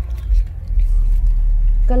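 A low, steady rumble, with a few faint clicks and rustles in the first second as a cabbage leaf stalk is handled.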